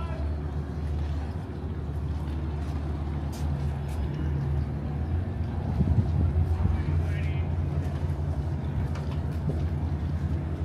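A steady low engine drone, an idling motor running throughout with a slight swell about six seconds in.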